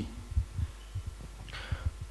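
Handling noise from a handheld microphone: about six soft, irregular low thumps over a steady electrical hum. An intake of breath comes near the end.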